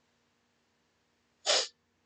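One short, sharp burst of breath noise from a man close to the microphone, about one and a half seconds in, heard over a faint steady electrical hum.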